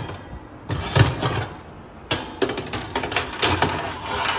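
Wire oven racks being slid along the oven's metal side rails and set down, scraping and clanking in several bursts, about a second in and again from two seconds on.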